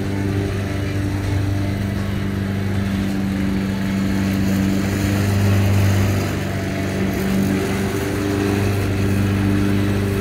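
Gasoline walk-behind lawn mower engine running steadily, its note wavering slightly a little past the middle.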